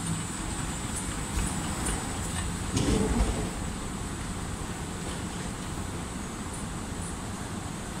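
Steady mechanical rumble of a moving walkway, with a thin high whine over it and faint clicks. A louder low thump comes about three seconds in.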